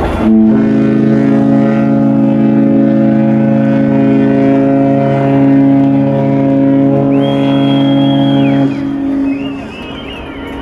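Cruise ship's horn sounding one long, steady blast of about eight and a half seconds, a deep chord of several tones that starts abruptly and cuts off near the end: the ship's farewell signal on leaving port. A high thin whistle sounds over it for a second or so near the end.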